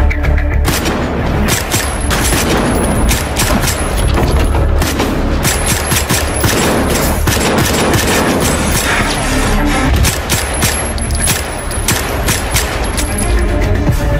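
Film gunfight: a rapid, sustained volley of gunshots, many in quick succession, with deep booms, over an action score.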